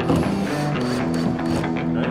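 Background music led by guitar, with sustained notes over a steady beat.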